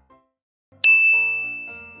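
A single bright ding sound effect: one sharp strike, like a small bell, that rings on and slowly fades. It comes after a moment of silence and marks the change to a new section.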